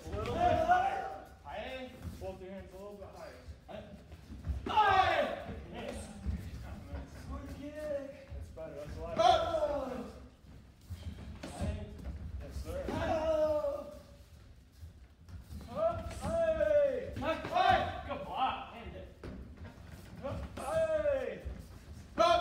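Taekwondo kihap yells: about seven short shouts a few seconds apart, each falling in pitch, as sparring partners kick. Dull thuds of kicks landing on padded chest protectors come in between.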